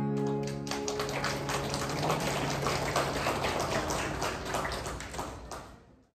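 The last strummed acoustic guitar chord rings out, then a small audience claps, the applause fading away near the end.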